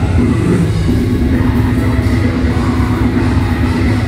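Live deathcore band playing loud: heavily distorted guitars and drums in a dense, steady wall of sound with a held note through most of it, picked up from among the audience in a concert hall.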